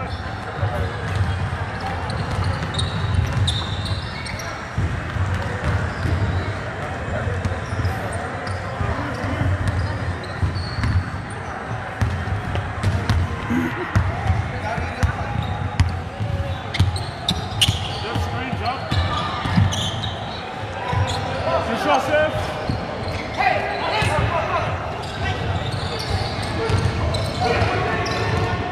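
Basketball dribbled on a hardwood gym floor, with repeated thuds of the bouncing ball, under indistinct shouts and chatter of players and spectators that grow louder near the end.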